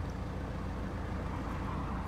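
Audi A4 2.0 TDI diesel engine idling steadily, heard from inside the cabin as a low, even hum.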